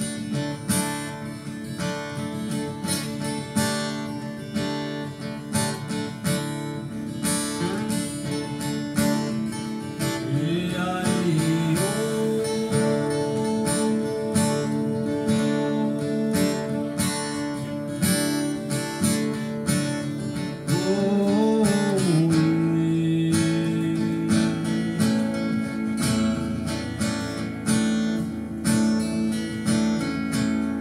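Two acoustic guitars played together, strummed and picked at a steady pace. From about ten seconds in a voice sings long held notes that bend into pitch, once more at about twenty-one seconds.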